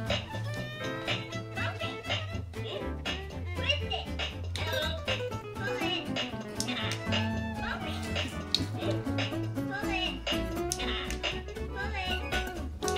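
Minion Bop It toy running its game: a looping music track with a steady beat, and a voice calling out short commands as the toy is bopped and twisted.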